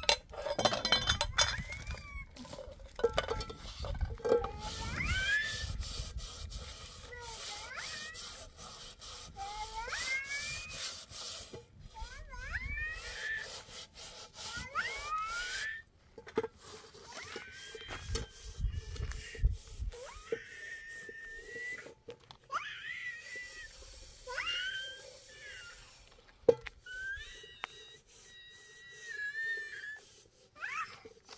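A cat meowing again and again, short high rising calls every second or two, over the scraping and clanking of metal pots and a pan being scrubbed by hand, with one sharp clink late on.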